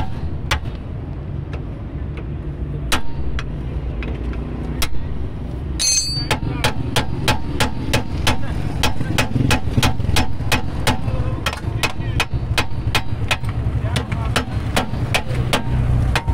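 Steel hammer striking a steel drift held against a car's rear axle stub and hub: a few separate metallic blows, then from about six seconds a fast steady run of strikes, about three a second, over a steady low rumble.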